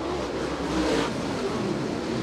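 A field of dirt late model race cars accelerating hard together on a restart, their V8 engines at full throttle in one steady, dense engine noise.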